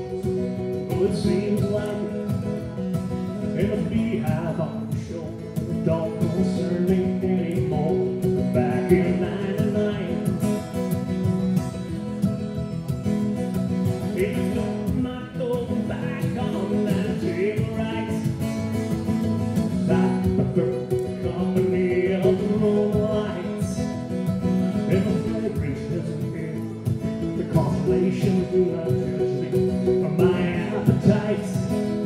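Acoustic guitar strummed and mandolin picked together in a steady rhythm, with a man singing lead in phrases over them.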